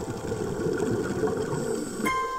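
Steady low underwater noise picked up by a camera in an underwater housing, with faint music tones fading out behind it.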